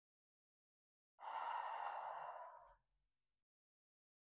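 A woman's long, audible exhale, lasting about a second and a half and starting suddenly, breathed out on the effort of pulling a dumbbell back up over her chest in a pullover.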